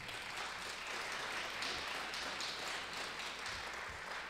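Audience applauding, many hands clapping in a steady crowd applause that swells up in the first half second and then holds.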